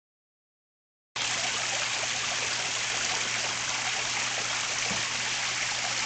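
Artificial rock waterfall spilling into a swimming pool: a steady, even rush of falling, splashing water that starts about a second in.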